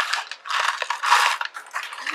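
Popcorn rattling in a clear plastic tub as it is shaken, in a quick run of dry, crackly bursts.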